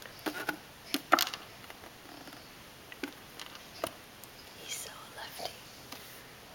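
A baby's hands tapping and patting a plastic seat tray: a few short, sharp taps, the loudest about a second in, with quiet whispered voice sounds near the end.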